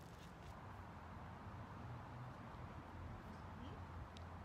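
Faint, steady outdoor background noise with a low hum and no distinct event.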